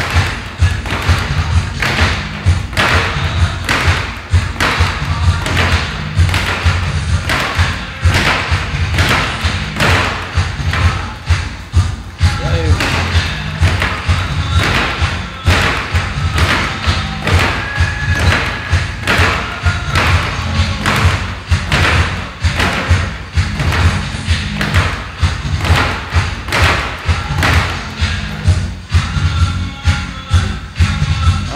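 Fists hitting a hanging punch ball in a steady run of thuds, about two or three a second, with music playing underneath.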